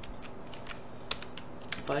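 Computer keyboard keys being pressed: about half a dozen separate keystrokes, unevenly spaced, while a text file is edited in the vi editor.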